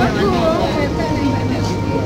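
A person's voice, fading after about a second, over a steady low hum that grows stronger in the second half.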